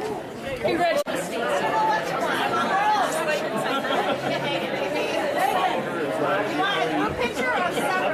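Crowd chatter: many people talking at once in a large room. There is a sudden brief dropout about a second in.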